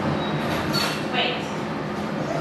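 Steady rumbling background noise, with a few brief high squeaks about a second in.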